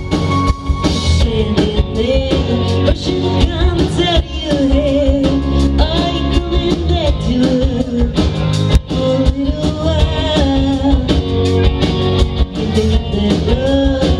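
Live indie rock band playing: a woman sings the lead over electric guitar, bass, keyboard and drum kit.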